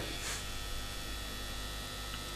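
Steady electrical mains hum with a faint hiss under it: the background noise of the broadcast.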